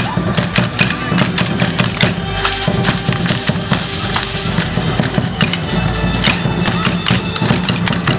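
Live music for a traditional Mexican folk dance: a drum beating with a flute, amid many sharp clicks and taps from the dancers' rattles and steps.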